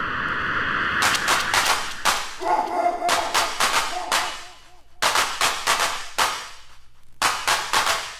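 DJ scratching on a turntable-style controller platter: runs of rapid, choppy cut-up strokes, broken by two short lulls, one a little before the five-second mark and one just before the seven-second mark.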